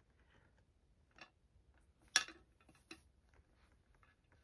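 Wooden beads of a bead-maze toy clicking against one another and the wire as a small child slides them along: a few faint, scattered clicks, the loudest about two seconds in.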